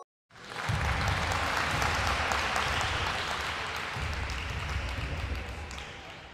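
Crowd applause sound effect, a dense patter of many hands clapping that starts a moment in and fades out at the end.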